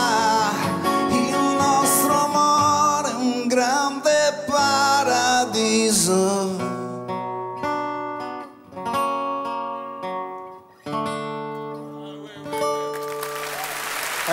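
Closing bars of a live pop ballad: the full band plays for about six seconds, then a solo acoustic guitar picks slow single notes and chords that ring out and fade, ending the song.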